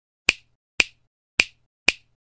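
Four sharp snap-like clicks, about half a second apart, with silence between them: a sound effect timed to the intro's animated lettering.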